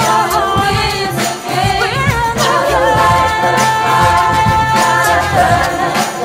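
A large choir singing with a symphony orchestra of strings and brass in a live performance of a choral anthem; a long note is held from about halfway in.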